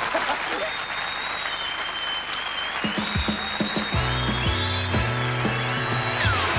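Audience applause over closing theme music; the music's bass and chords come in strongly about four seconds in.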